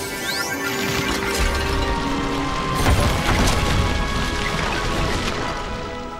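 Cartoon sound effects of a magic spell going wrong: a rumbling crash with sharp hits, loudest about three seconds in, then dying away, over music.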